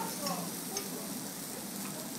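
Beef and chicken sizzling on a hot steel teppanyaki griddle: a steady frying hiss.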